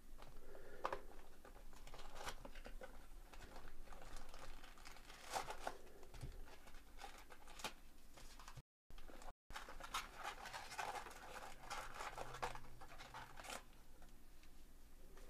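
A cardboard trading-card hobby box is torn open and handled, with scattered clicks and scrapes, then a stretch of crinkling as wrapped card packs are pulled out of it. The audio cuts out twice briefly about nine seconds in.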